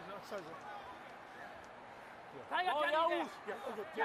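A man speaks briefly over a low, steady murmur of a stadium crowd. The murmur fills the first couple of seconds before the voice comes in.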